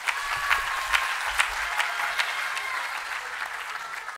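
Audience applauding in a hall at the close of a speech, fading slightly toward the end.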